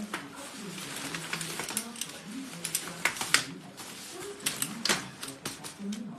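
Travel cot frame being folded by hand: irregular sharp clicks and rattles from its rail locks and hinges, the loudest about three and five seconds in.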